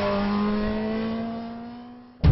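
Motorcycle engine revving high, its note rising slowly as it accelerates, then fading away.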